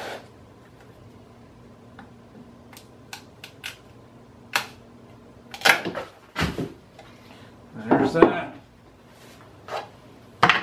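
Light ticks, then a few louder knocks and clatters of hard pieces handled on a wooden workbench: a chisel set down and parting-plane boards pulled off a fiberglass mold and laid aside.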